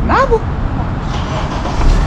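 Steady low rumble of street traffic and vehicles, with one short high-pitched voice call rising then falling right at the start.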